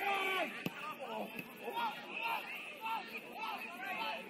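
Indistinct voices of players and spectators calling and talking at an outdoor football match, with a single sharp knock about two-thirds of a second in.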